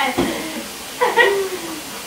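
A short, low knock, then about a second in a brief falling vocal sound from a person (an unworded utterance or laugh), over a faint steady hiss.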